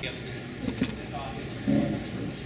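Room noise with a sharp knock a little under a second in and a louder, short low thump near the end, over faint background voices and a steady hum.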